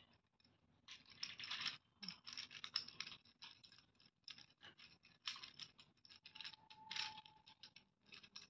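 Faint quick clicking and rattling of a plastic gear cube puzzle as its faces are turned by hand, the gear teeth meshing as the layers rotate. The clicks come in short runs separated by brief pauses.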